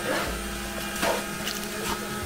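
Trowel scraping through wet cement mortar in a mixing tub, a stroke about once a second, over a steady mechanical hum.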